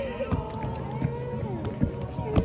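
Indistinct voices with a few irregular footfalls of a child running on the ground.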